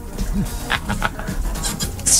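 Quiet background music bed on a radio show, with a steady low bass line and scattered small clicks and noises over it.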